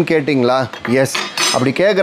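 A man talking, with stainless steel stock pots and lids clinking and knocking as they are handled.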